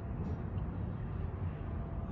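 Steady low rumble of background noise, with no distinct events.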